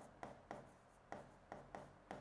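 Faint taps and light scratches of a stylus pen writing on an interactive whiteboard screen, as a few short ticks spread over the two seconds.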